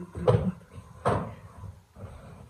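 A pillow struck twice against a person, two soft thuds about a second apart, the second the longer.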